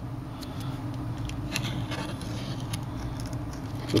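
Faint, scattered light ticks and scratches of a fingertip working around the edge of a Samsung Galaxy S5's metal midframe to clear out glass fragments, over a steady low background hum.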